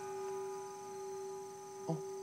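A steady, bell-like ringing tone of several held pitches that does not fade: the ring of the hand bell struck to signal the chosen man's number, held on. A short surprised "eh?" is heard near the end.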